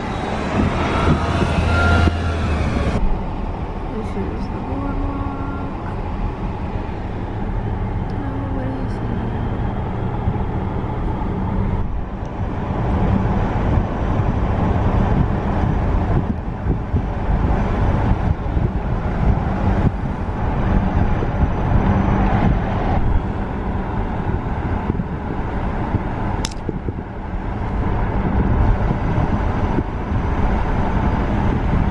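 Steady road noise of a car driving along, heard from inside the cabin: engine and tyre hum with wind. A louder low hum in the first three seconds cuts off suddenly.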